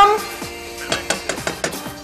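Wooden spatula stirring shrimp and vegetables in a wok, with a run of light scrapes and taps against the pan about a second in, over soft background music.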